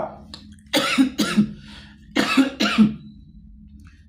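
A man coughing, two short double coughs about a second and a half apart.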